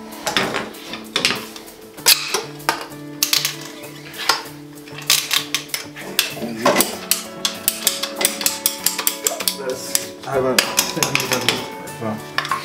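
Plastic (PVC) pipe and fittings being handled and pushed together, giving many sharp clicks and knocks, over background music with steady held tones.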